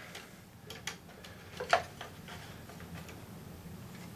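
A few light plastic clicks and taps as a stack of 35mm slides is dropped into a Kodak stack loader on a slide projector and pressed into place, the loudest about one and a half seconds in.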